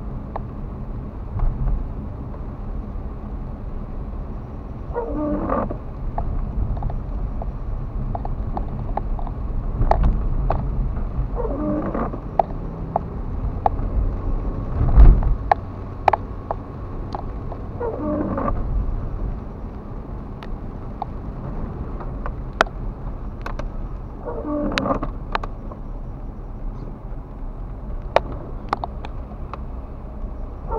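Inside a car driving in rain: steady engine and wet-road hum, with the windscreen wipers on intermittent making a rubbing sweep across the glass four times, about every six and a half seconds. Sharp ticks of raindrops hit the car throughout, and there is one louder thump about halfway through.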